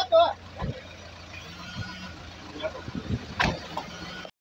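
A stopped SUV's engine idling with a steady low hum, with a few knocks and one sharp knock about three and a half seconds in.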